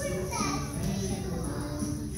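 A group of young children's voices, singing and chattering together over background music.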